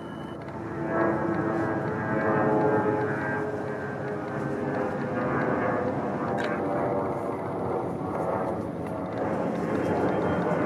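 A steady engine drone made of many stacked pitched tones, growing louder about a second in and then holding.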